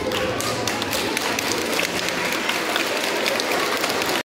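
Audience applauding, many quick hand claps together.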